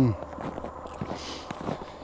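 A man's voice breaks off at the start, followed by a pause of faint rustling and light handling noise, with a soft hiss a little past a second in.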